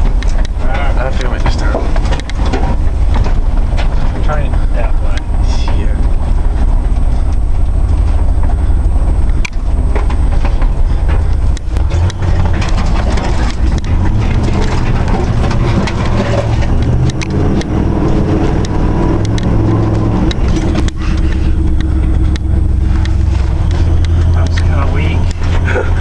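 GMC pickup truck driving over a rough dirt trail, heard from inside the cab: a loud low rumble, with the engine note stepping up and down as the revs change, and frequent knocks and rattles as the truck jolts over bumps.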